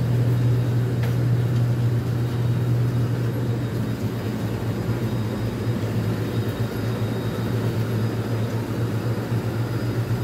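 Commercial laundry machines, washers and tumble dryers, running together as a steady low hum with a rushing noise over it, even throughout.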